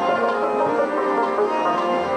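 Pashto ghazal accompaniment: a rabab plucking the melody over held instrumental notes, steady and continuous, with no clear singing.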